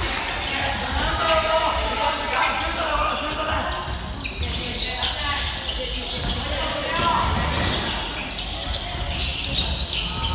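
Basketball game on a wooden gym floor: a ball bouncing in short knocks, with players' voices calling out, echoing in a large hall.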